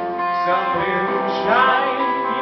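A man singing with a strummed acoustic guitar, holding long sung notes over steady chords.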